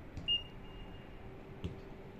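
One short whistle blast, a single high steady tone that comes about a quarter second in and fades away within a second. A dull knock follows near the end.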